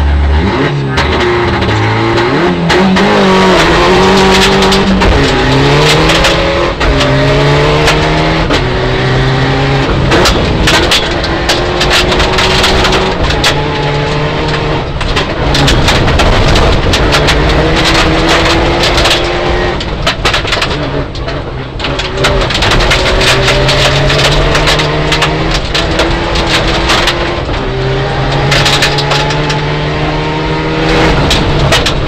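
Mitsubishi Lancer Evolution IX rally car's turbocharged four-cylinder launching from the stage start and accelerating hard through the gears, engine pitch climbing and dropping back at each upshift, heard from inside the cabin. Gravel clatters against the underbody throughout.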